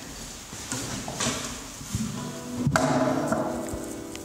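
Acoustic guitar strings struck twice, about a second in and again near three seconds, each chord left to ring on; the second is the louder.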